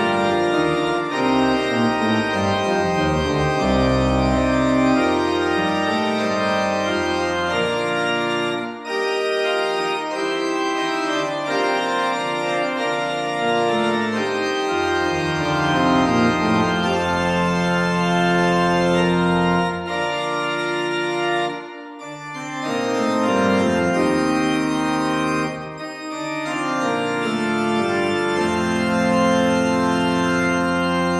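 Organ music: full sustained chords that change from phrase to phrase over a low bass, with a few short breaks between phrases.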